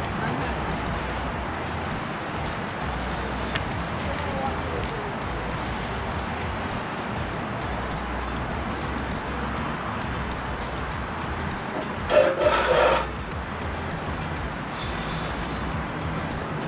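Steady wind and road-traffic noise with background music, and a short burst of a voice about twelve seconds in.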